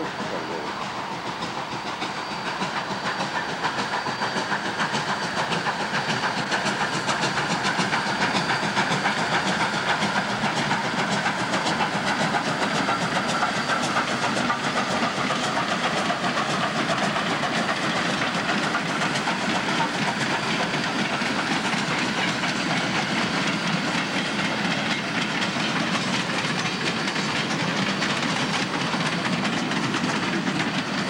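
A 2-8-2 steam locomotive passing with its train, steam hissing, then freight cars rolling by with a clickety-clack on the rails. The sound builds over the first several seconds as the train approaches, then holds steady.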